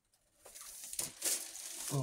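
Packing material crinkling and rustling as it is handled, starting about half a second in, with a few sharper crackles along the way.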